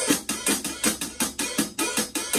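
Drum kit playing a disco groove: bass drum on every beat under steady hi-hat eighth notes, closed on the downbeats and opening with a wash on the upbeats.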